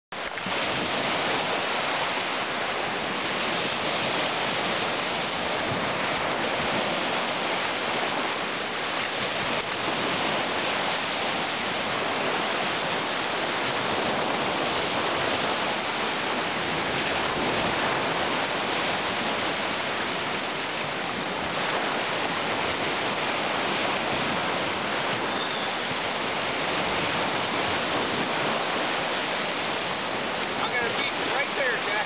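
Steady rushing of water as small lake waves wash in over a gravel shore where a creek runs into the lake.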